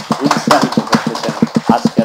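Hands clapping in a fast, even rhythm, about eight or nine claps a second, with a voice speaking underneath.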